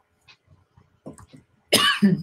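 A woman coughing: a few faint small throat sounds, then a loud, sharp cough near the end.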